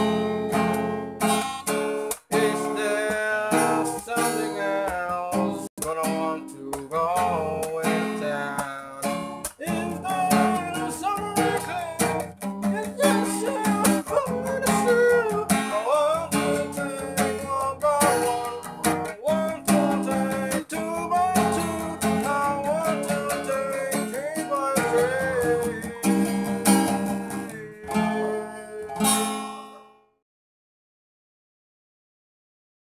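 Acoustic guitar being strummed in a song, with a wavering melody line over the chords. The music fades out and stops at the very end.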